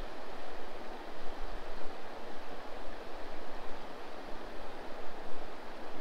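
Small waves lapping along a rocky lake shore: a steady, even rushing noise with no distinct splashes.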